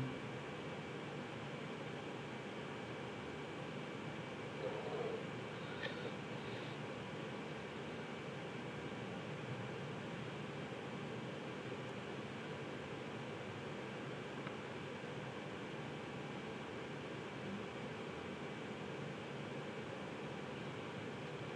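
Faint steady hiss of room noise, with a couple of soft brief sounds about five and six seconds in.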